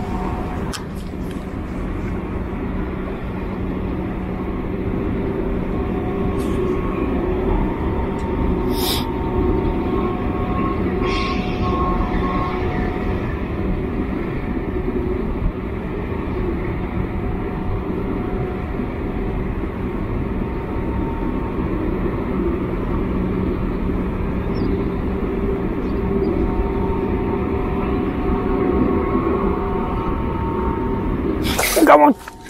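A steady mechanical drone: a low rumble with an unbroken hum at a few fixed pitches, with a few brief high hisses or clicks about a third of the way in.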